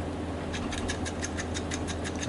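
Hand hex driver turning a small screw into a plastic RC car chassis: a rapid, regular run of small clicks, about eight a second, starting about half a second in, over a steady low hum.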